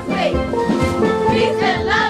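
A steel drum band playing a lively tune, with young voices chanting in rhythm over the pans.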